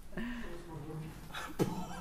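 A person's low, wordless vocal sound, held for about a second, followed by a few short breath or mouth clicks.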